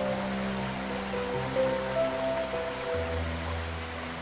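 Slow, soothing piano music with a gentle melody and held bass notes that change about three seconds in, over a steady rush of waterfall water.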